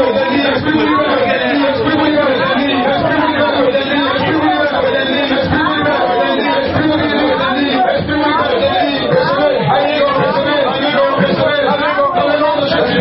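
Many voices speaking aloud at the same time, a dense, steady overlapping babble of a crowd with no single voice standing out.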